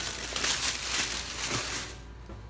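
Thin plastic shopping bag rustling and crinkling as it is handled, a dense crackly noise that stops shortly before the end.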